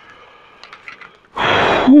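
A man's loud, breathy exhale against the cold, rushing for about half a second near the end and running straight into a falling "ooh".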